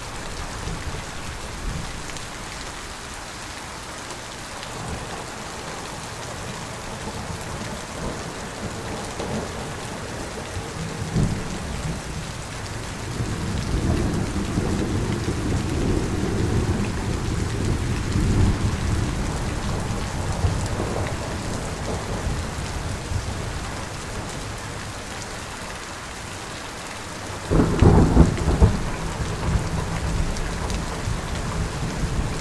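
Steady rain with thunder: a long low rumble rolls in a little before the middle and dies away. Near the end comes a sudden, loud crack of thunder.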